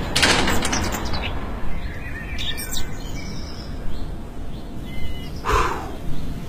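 Birds chirping over a steady background of outdoor noise, with a brief rush of noise in the first second.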